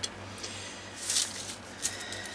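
Soft rustle of a sheet of copy paper, with deli paper taped onto it, being slid and turned by hand on a cutting mat, with a brief light tap near the end.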